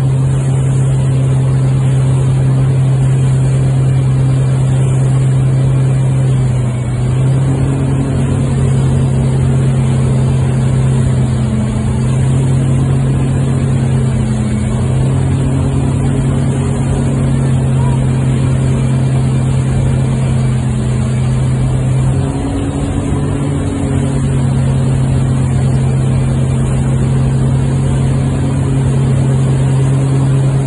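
Wake boat's inboard engine running steadily at surf speed, a deep hum that dips and rises slightly in pitch a few times.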